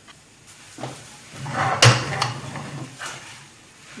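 Kitchen utensil handling at a frying pan: quiet scraping and rustling, with one sharp knock a little under two seconds in.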